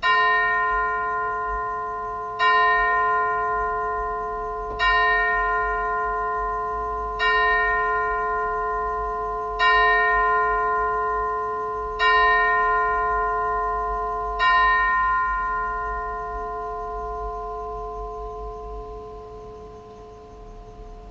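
A single bell tolled seven times at an even pace, about two and a half seconds apart, all on the same note. Each stroke rings on under the next, and the last slowly dies away. It is tolled to open a church service, before the call to worship.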